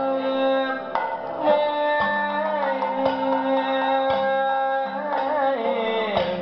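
Live Kathakali accompaniment: a voice singing long held notes that slide in pitch, over a lower sustained part, with sharp percussion strokes about once a second.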